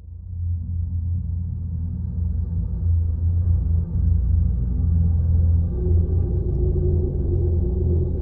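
Low rumbling suspense drone from a film score. It starts suddenly, swells a little, and a higher held tone joins it about six seconds in.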